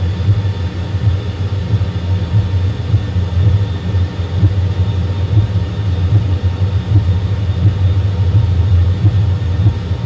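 Airbus A320 full flight simulator's cockpit sound, a loud, steady low rumble of airliner engines and runway roll with a faint steady whine above it, starting suddenly.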